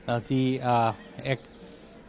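A man speaking a couple of halting words with a drawn-out, even-pitched syllable, then a pause with only faint background noise.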